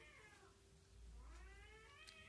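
Two faint meow-like calls: one tails off in the first half second, and another begins about a second in, each rising and then falling in pitch.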